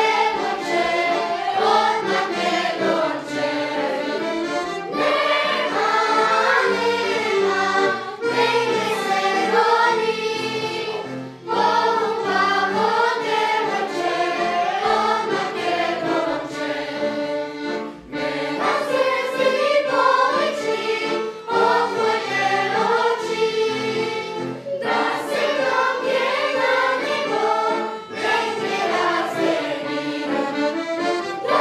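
Children's and youth choir singing a song together, in sung phrases with brief pauses between lines.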